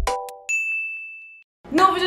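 Intro jingle ending: a last beat with a chord, then a single high ding ringing for about a second before cutting off.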